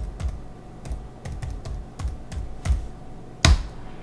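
Password being typed on a Chromebook's laptop keyboard: a run of separate key clicks at an uneven pace, with one harder key press near the end.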